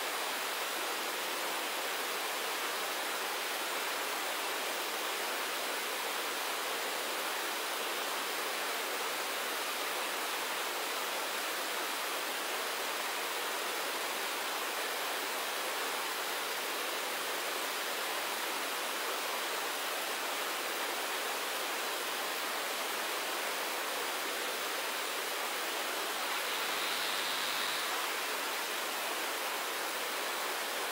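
A steady, even hiss of noise, a little brighter for a couple of seconds near the end.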